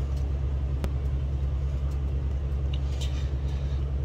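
A steady low hum fills the room, with a few faint puffs as a small tobacco pipe is drawn on.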